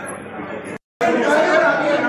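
A short dead silence, then several men talking loudly over one another in a room, a heated crowd commotion.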